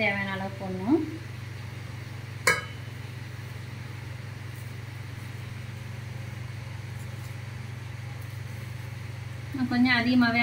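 A steel tin knocking once against a steel bowl as powder is poured onto dry poha, a single sharp click about two and a half seconds in, followed by hands mixing the dry flakes, all over a steady low hum. A voice speaks briefly at the start and again at the end.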